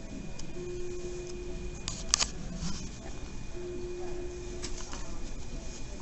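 Fetal heart monitor sounds: a low electronic tone held about a second, twice, about three seconds apart, over a faint steady high whine, with a sharp click about two seconds in.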